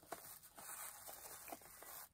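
Very faint handling noise of a small cardboard product box, with a couple of soft ticks over a low hiss.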